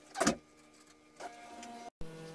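Dishwasher's lower rack rolling briefly on its rails, one short scrape-and-rattle near the start, followed by a faint steady hum.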